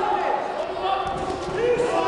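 Voices shouting from ringside during a boxing bout, several overlapping and rising and falling in pitch, with a few dull thuds from the ring.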